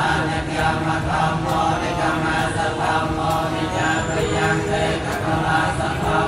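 A group of Buddhist monks chanting together in unison, a steady, continuous recitation by many male voices.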